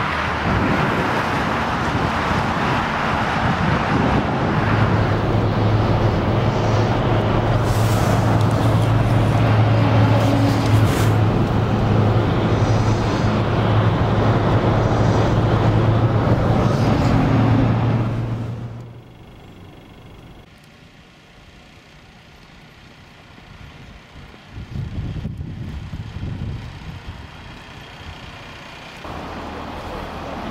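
Motorway traffic noise from heavy lorries and cars, turning into the steady drone and road noise heard inside a moving car. About two-thirds of the way through it drops suddenly to a much quieter, faint rumble.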